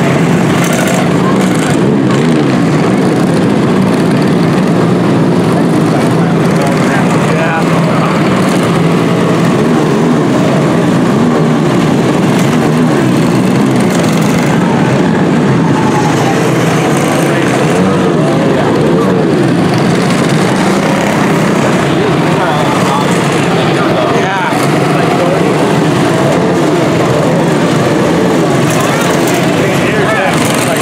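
Several quarter midget race cars' small single-cylinder engines running together, loud and continuous, their pitches rising and falling as the cars circle the oval.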